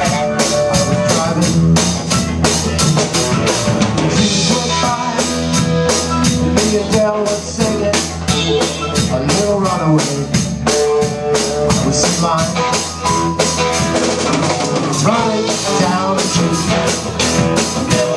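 Live rock band playing an instrumental passage: a drum kit keeps a steady, driving beat, with electric guitar playing over it.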